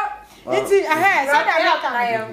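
Speech only: a woman talking animatedly in a high voice whose pitch swoops up and down, starting after a short pause.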